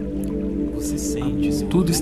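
Calm ambient background music with sustained held tones over a softly pulsing low note; a man's voice begins just before the end.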